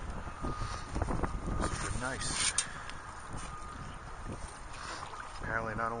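Boots wading through shallow bay water, splashing and sloshing with each step, one louder splash about two seconds in, with wind on the microphone. A faint steady tone from the metal detector's threshold hum runs underneath.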